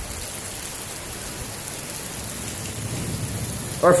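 Heavy thunderstorm rain falling steadily, an even hiss.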